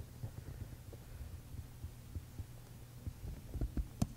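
Steady low electrical hum with scattered soft low thumps, a few louder thumps about three and a half seconds in.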